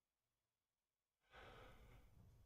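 Near silence, then about a second in a person lets out a faint, breathy sigh lasting about a second and a half.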